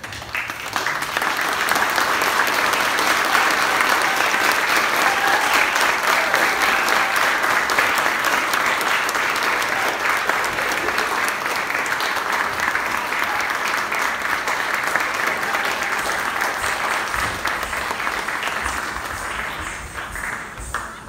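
Audience applauding: clapping that breaks out about half a second in, holds steady and thins out near the end.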